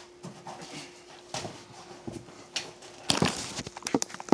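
Handling noise on a phone microphone: a few scattered knocks and steps, then from about three seconds in a loud cluster of rubbing and knocking as a hand grabs the phone. A faint steady hum lies underneath.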